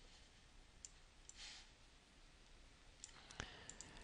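Near silence with a few faint clicks of a computer keyboard and mouse as text is entered on screen.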